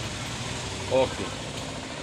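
A steady low background hum under a pause in speech, with one short syllable of a man's voice about a second in.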